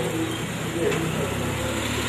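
A car engine running as a vehicle moves past close by, over people's voices.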